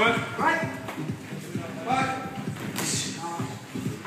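Short shouts from people at ringside during a boxing bout, over scuffing and thuds from the boxers' feet and gloves on the ring canvas.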